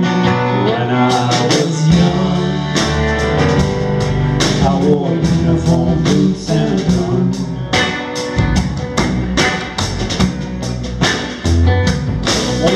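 Live band playing an instrumental passage: electric and acoustic guitars, upright bass and drum kit, with the drums picking up about a second in and the bass filling in just after.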